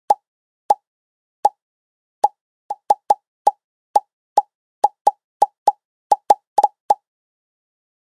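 A series of short pop sound effects, about twenty in all, each a quick mid-pitched pop. They come faster and closer together toward the end and stop about seven seconds in.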